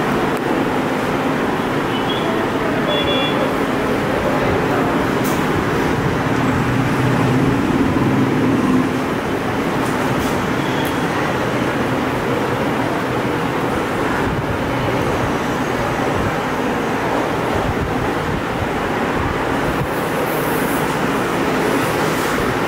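Steady, loud background rumble and hiss with no clear rhythm, swelling slightly about six to nine seconds in.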